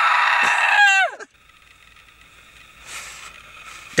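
A young man's long, high acted scream of terror, held steady and then sliding down in pitch and breaking off about a second in.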